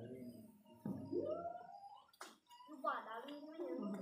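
People's voices talking in a small room, broken by one sharp click a little over two seconds in.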